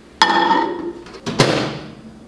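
A ceramic bowl set down on a microwave's glass turntable with a ringing clink, then about a second later the Black+Decker microwave door is shut with a thud.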